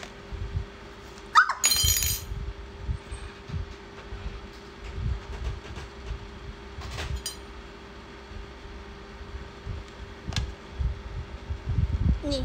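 Brown paper food wrapping crinkling and crackling as a rice parcel is unfolded, with dull knocks from handling. The loudest crackle comes about a second and a half in, with smaller ones later.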